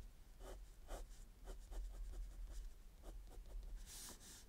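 Fineliner pen scratching short hatching strokes on sketchbook paper, faintly, about three strokes a second.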